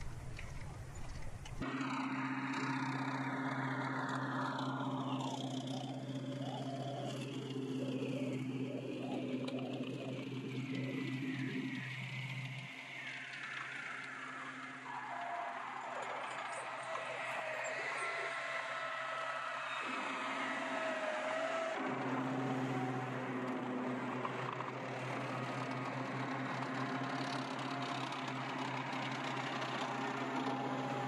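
Tracked armoured vehicles (Bradley Fighting Vehicles) rolling past at low speed: a steady low engine drone with track and running-gear noise, and a whine that rises in pitch a little past the middle. The sound changes abruptly a few times.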